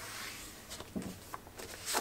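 A sheet of paper being folded and creased by hand on a table, a light rustle with a few short soft taps, and a brief louder rustle near the end as the sheet is picked up.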